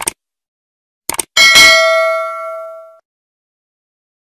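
Subscribe-button animation sound effect. A short mouse click comes first, then a quick double click about a second in, followed by a bell ding that rings out and fades over about a second and a half.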